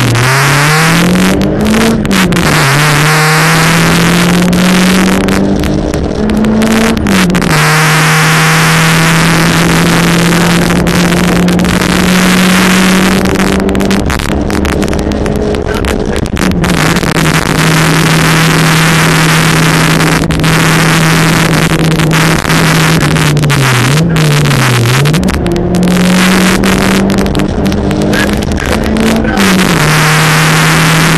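Fiat Cinquecento 1.1 four-cylinder rally engine with a tuned ECU, driven hard and heard from inside the cabin: held at high revs for long stretches, with a few quick rises and drops in pitch at gear changes and lifts. Loud road and wind noise runs underneath.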